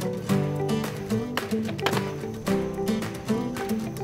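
Background music with sustained notes over a steady beat.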